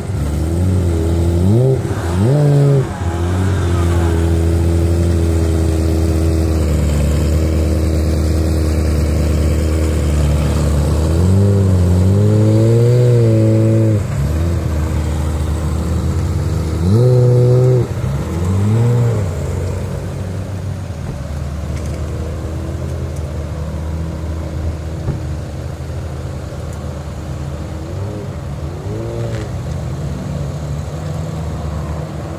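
Ferrari F355 V8 engine idling, blipped a few times in quick pairs, with one longer held rev about halfway through, then settling back to a steady idle.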